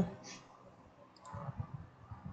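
Faint clicks in a quiet room, with a faint low murmur coming in a little past halfway.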